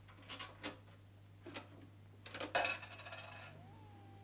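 Curtain rings clinking on a metal curtain rail as the curtains are drawn. A few single clicks come first, then about two and a half seconds in a quick rattling run that rings on briefly.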